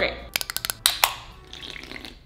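A few sharp clicks of an aluminium drink can being opened, followed by about a second of soft fizzing hiss.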